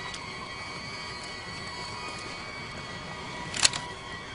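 A steady high hum made of several thin tones, with faint scattered ticks and one sharp, loud click near the end.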